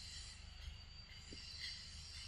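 Quiet forest ambience: a steady, high-pitched insect drone over a faint low rumble.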